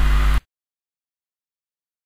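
Digital silence: a faint steady low hum cuts off abruptly less than half a second in, and the sound track is then completely dead.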